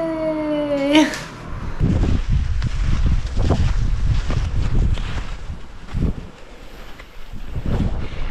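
A woman's drawn-out, excited "yeah" for about a second, then heavy wind buffeting the microphone outdoors while cross-country skiing, with a few sharp knocks in among it.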